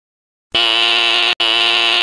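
Telephone ringing sound effect: a steady, buzzy electronic ring that starts about half a second in and comes in two rings of just under a second each, split by a brief gap.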